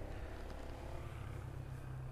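Faint outdoor background with a steady low rumble.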